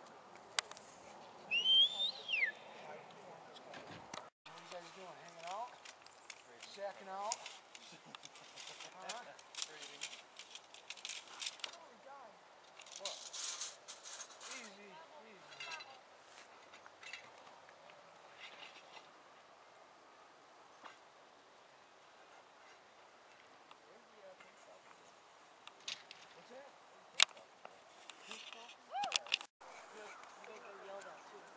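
Faint, indistinct voices in the open air over low background noise, with a short high falling call about two seconds in and a single sharp click near the end.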